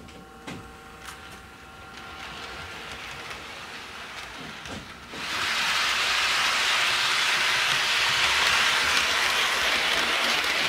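HO scale model train running on its track: at first a faint hum with a few light clicks. About halfway through, a sudden, loud, steady hiss of rolling noise sets in and holds.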